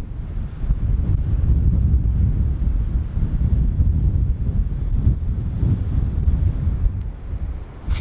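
Strong wind buffeting the camera microphone: a loud, gusting rumble.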